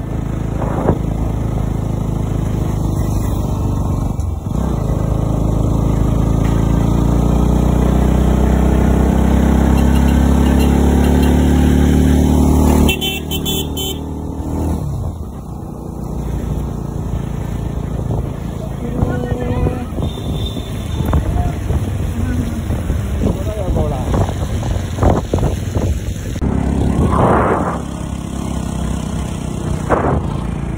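Motorcycle engine running while riding, with wind noise. The engine note rises steadily for several seconds as the bike accelerates, then drops off abruptly a little before halfway as the throttle closes. After that it runs on more unevenly at a lower level.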